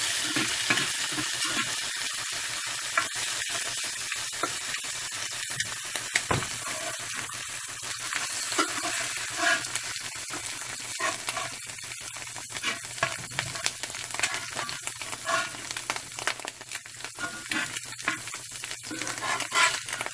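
Eggs sizzling as they fry in an Ozark Trail cast iron skillet, with a spatula repeatedly scraping and tapping on the pan bottom as the eggs are chopped and turned.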